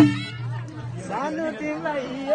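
Nepali panche baja band stops playing: one last loud drum stroke at the start, the held reed tone dying away just after it. After a short lull, people's voices and chatter begin about a second in.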